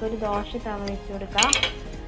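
Iron tawa set down on a gas stove's cast-iron grate, a short metallic clatter about one and a half seconds in, heard over a voice.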